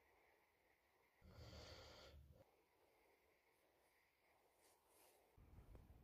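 Near silence, broken about a second in by one soft rush of noise lasting about a second.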